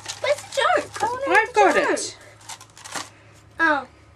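A woman's voice, in speech the recogniser did not write down, through the first two seconds and briefly again near the end, with a few light clicks in the pause between.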